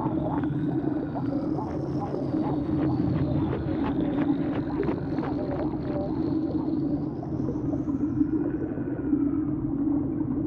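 Ambient sound design under a cell animation: a steady low drone with a faint high tone that glides slowly up and down, and a scatter of soft small ticks.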